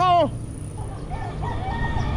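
A rooster crowing faintly: one drawn-out call starting about half a second in, heard over steady wind rumble on the microphone.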